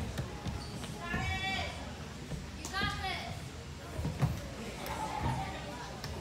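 A high-pitched voice calls out twice, once about a second in and again about three seconds in, over scattered short knocks.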